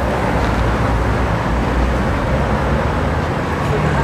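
Steady city street traffic noise with a low engine rumble from vehicles on the road.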